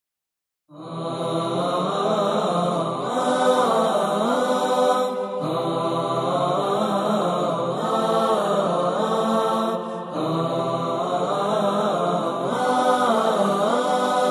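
Intro music of chanted voices, starting about a second in, sung in long phrases with brief breaks between them.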